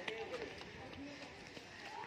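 Faint, indistinct voices in the background, with a couple of light footsteps near the start from a small child in sandals stepping down stairs.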